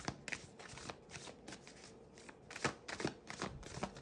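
A deck of tarot cards being shuffled by hand: faint, scattered soft clicks and flicks of card on card, coming thicker for about a second in the latter half.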